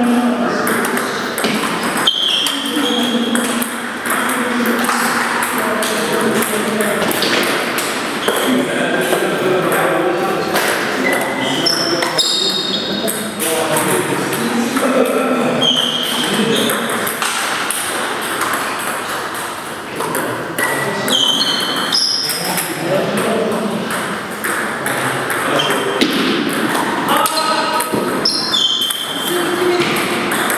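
Table tennis ball clicking on the table and off the paddles during rallies: many short, sharp pings, with pauses between points. Voices talk in the background throughout, in a large hall.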